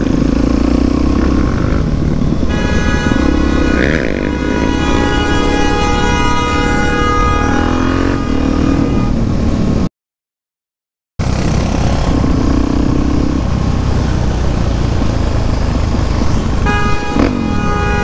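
A vehicle horn held in one long steady blast from about two seconds in until about nine seconds, and sounding again near the end, over a supermoto motorcycle engine running. The sound drops out completely for about a second near the middle.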